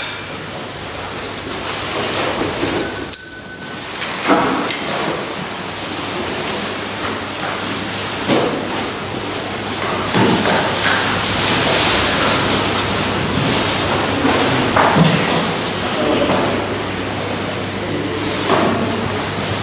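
People rising from wooden church pews and shuffling, with scattered knocks, thuds and footsteps over a steady hiss of room noise in a large hall. A brief high ring sounds about three seconds in.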